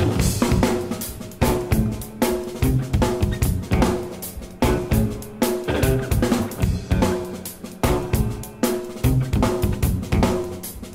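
Instrumental math-rock recording in a drum-led passage: a drum kit plays a busy, syncopated pattern of snare, kick and hi-hat hits, with held pitched notes from the band sounding underneath.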